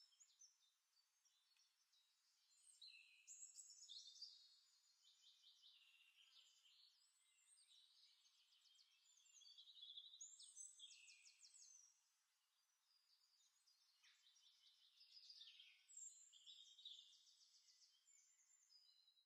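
Near silence broken by faint birdsong: high chirps and rapid trills in three short spells, about three seconds in, about ten seconds in, and near the end.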